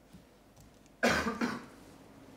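A person coughing, two quick bursts about a second in, picked up by the hearing-room microphones.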